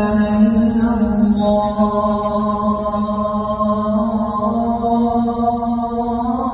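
A man's voice calling the adhan, the Islamic call to prayer, through the mosque's microphone and loudspeakers, drawing out one long held note with slow melodic turns.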